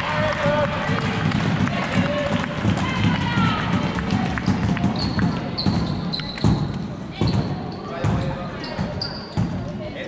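Floorball match in a sports hall: voices shouting across the court, with sharp knocks from play and, in the second half, a run of short high squeaks.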